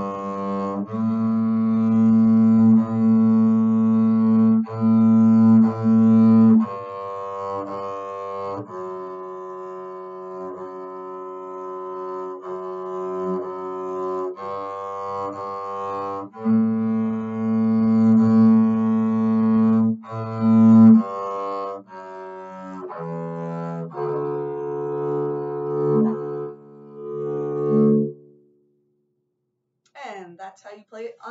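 Double bass bowed (arco), playing a slow beginner half-note exercise that begins on F sharp: long sustained notes of about two seconds each, stepping up and down, with audible bow changes between them. The playing stops near the end.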